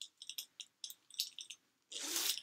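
Small objects being handled by hand: an irregular run of light clicks and rattles, about a dozen in two seconds.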